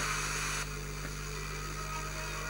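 Hiss from an RTL-SDR FM receiver in GNU Radio tuned between stations, with a steady mains hum under it. The hiss thins out suddenly just over half a second in.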